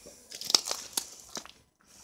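Footsteps crunching on a floor strewn with dry wood and leaf debris: a few short sharp crackles, then a brief lull near the end.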